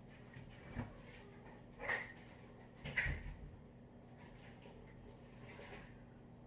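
Three short knocks about a second apart from things being handled in a kitchen, the last the loudest, over a faint steady room hum.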